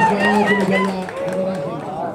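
Several men's voices calling and shouting over one another, dying down after about a second.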